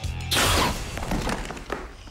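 A gas gun going off as a film sound effect: a sudden loud blast about a third of a second in that fades away over about a second, with trailer music underneath.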